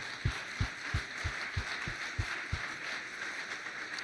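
Conference audience applauding. A pair of hands close to the microphone claps about three times a second, heard as low thumps, and stops about two and a half seconds in.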